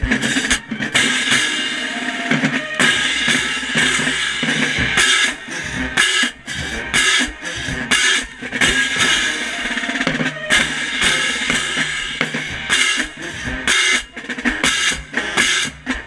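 Marching band percussion playing: crash cymbals struck right beside the microphone, ringing between strikes, over snare and bass drums in a driving rhythm.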